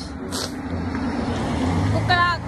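A car approaching and passing close by on the road, its tyre and engine noise growing steadily louder.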